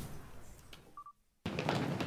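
A single short electronic beep from a badge scanner about a second in. It is followed by a moment of dead silence, and then a different background ambience starts.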